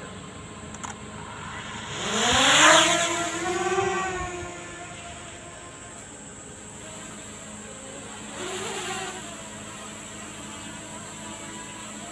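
DJI Mini 2 quadcopter taking off: its propellers spin up about two seconds in with a rising whine that levels off and fades as the drone climbs away. A fainter steady hum follows while it flies overhead.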